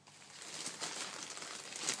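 Crinkly packaging rustling as it is handled, a dense crackle that starts faint and grows louder.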